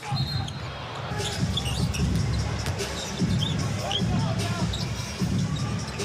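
Game sound in a basketball arena: a basketball bouncing on the hardwood court, with a few short high squeaks over a steady crowd rumble.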